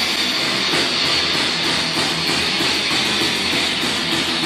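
Heavy metal band playing live: distorted electric guitar and drums in a dense, steady wall of sound. The recording is rough and compressed, cleaned up from a poor over-the-phone-quality capture.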